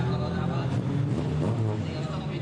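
Rally car engine running steadily under load as the car pulls away, with voices in the background.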